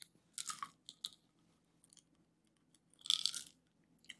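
A small white plastic bottle being handled and opened, with short crackly rattles about half a second in and again around three seconds in, and a few small clicks between.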